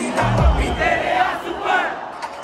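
A packed concert crowd yelling and shouting together, close around the microphone, with a deep bass boom about half a second in.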